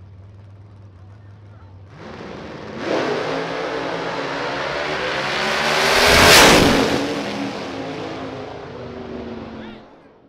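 Drag racing cars launching and accelerating hard down the strip at full throttle. The engines swell to their loudest as the cars pass close by about six seconds in, then fade away.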